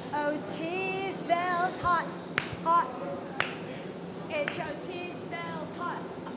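A voice singing or crooning wordlessly in short, wavering sustained notes, over a steady low background noise. There are two sharp knocks, about two and a half and three and a half seconds in.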